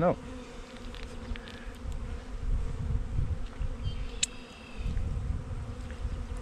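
Carniolan honeybees buzzing around the hives in a steady hum, over a low rumble. A faint, brief high chirp sounds about four seconds in.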